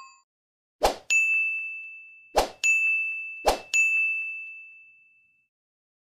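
Animated button sound effects: three times, a short pop followed by a bright ding that rings and fades, the three about a second apart.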